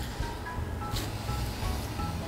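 Quiet background music with a steady, pulsing low bass line, and a faint brief click about a second in.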